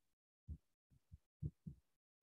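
Near silence, broken by four faint, very short low thumps.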